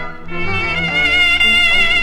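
A cobla, the Catalan sardana band of double-reed tenoras and tibles with brass, playing a sardana. There is a brief lull just after the start, then the melody carries on.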